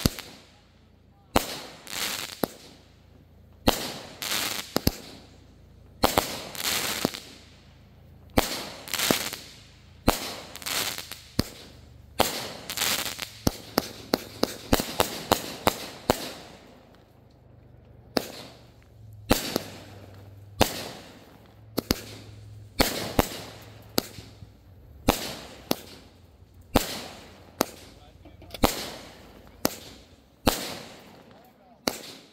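Aerial fireworks going off shot after shot, a sharp bang roughly every second or so, each followed by crackling. About halfway through comes a faster, denser run of crackling breaks.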